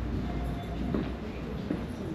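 A deep low rumble that dies away about half a second in, leaving room noise with a few light knocks of footsteps on a wooden floor.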